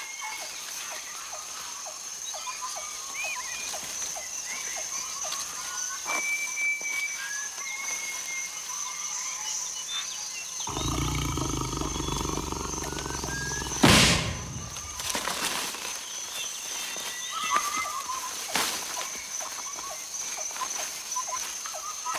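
Outdoor nature ambience: birds chirping on and off over a steady high whine. A lower rumble comes in about eleven seconds in, and a single loud, sharp bang with a trailing echo sounds about fourteen seconds in.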